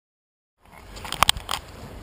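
Silence, then from about half a second in a steady wash of river and wind noise with a few sharp wooden knocks about a second in, typical of oars working in their oarlocks while rowing a wooden Ness yawl.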